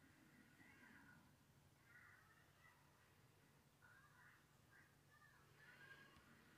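Near silence: faint room tone with a few faint, indistinct short sounds.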